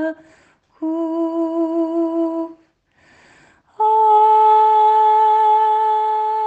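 Slow wordless hummed melody of long held notes with a slight waver. One note lasts from about one second to two and a half seconds. After a short quiet, a higher note starts about four seconds in and holds.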